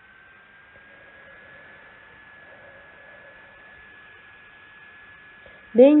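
Faint background hiss in the narration recording, with a steady high-pitched electrical whine that drifts slightly up in pitch over the first couple of seconds and then holds. A woman's speaking voice starts at the very end.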